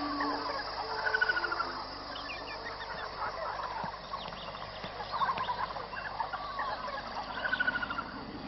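Bird-like calls: two short, rapid warbling gobble-like runs, one about a second in and one near the end, among scattered chirps.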